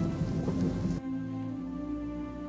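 Background music of held, sustained tones under a steady hiss; the hiss cuts off suddenly about a second in, leaving only the music.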